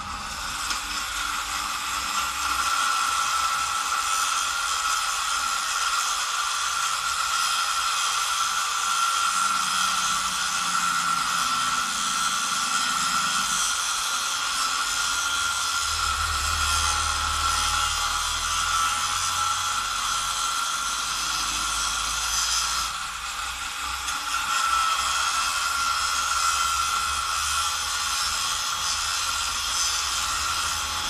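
Angle grinder cutting into a steel light pole: a steady high whine over a hiss of cutting, with a short dip about two-thirds of the way through.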